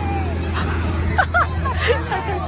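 Crowd chatter and a laugh around a swinging pendulum ride, over a steady low hum, with a few short high-pitched shrieks from the riders starting a little over a second in.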